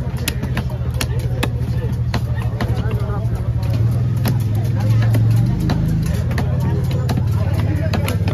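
Large knife chopping fish on a wooden block: sharp knocks at irregular intervals, over a loud, steady low mechanical hum and background voices.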